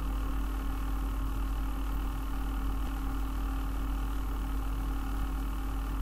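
Steady low electrical hum with a faint hiss, even and unbroken throughout, typical of mains hum picked up by a recording microphone.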